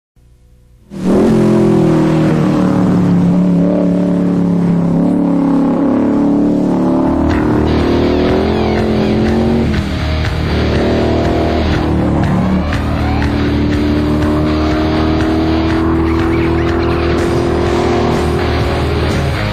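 Race car engine revving hard at speed over a rock soundtrack, starting suddenly about a second in. From about seven seconds a steady driving beat comes in under the engine.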